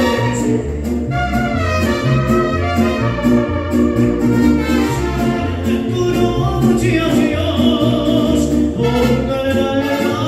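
Live mariachi band playing: trumpets carry the melody over a stepping guitarrón bass line with a steady beat.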